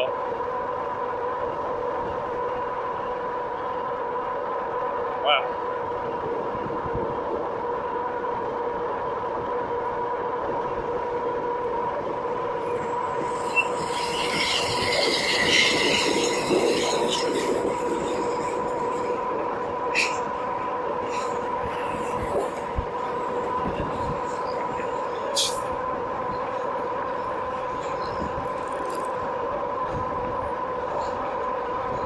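Electric bike's hub motor whining steadily at cruising speed over wind and tyre noise. A truck towing a trailer passes close by about halfway through, swelling and fading over a few seconds.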